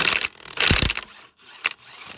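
Impact wrench on a car wheel lug nut, hammering in two short bursts while tightening it during a bolt check, with a sharp click near the end.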